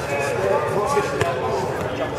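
Indistinct chatter of several people talking in a large hall, with a couple of sharp thumps around the middle.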